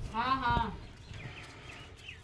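A single short voiced call, rising then falling in pitch, over a knock of the wooden arm and post or chain about half a second in.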